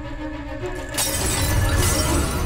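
Film trailer music with steady tones, then about a second in a sudden loud crash, like shattering, with a low rumble under it.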